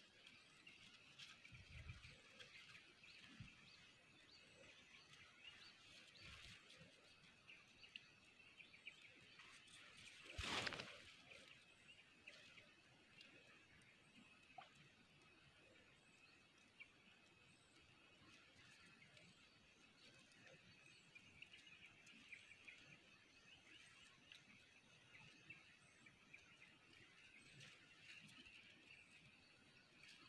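Near silence: faint rural ambience with thin high chirping throughout, and one brief louder noise about ten and a half seconds in.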